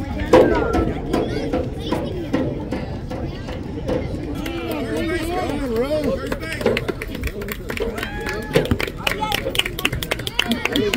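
Overlapping chatter of spectators and young players at a youth baseball game, a babble of voices with no single clear speaker. There is a loud burst just after the start and scattered sharp clicks near the end.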